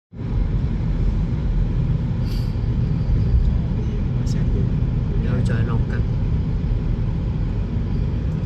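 Steady low rumble of a car driving on a snow-covered road, heard from inside the car: tyre and engine noise. A couple of faint clicks and brief murmured voices sit under it midway.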